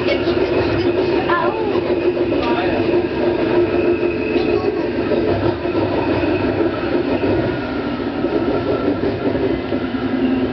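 Meiringen-Innertkirchen-Bahn electric railcar running along the track, heard from inside its rear cab: a steady hum from the motors and running gear under even wheel-on-rail noise.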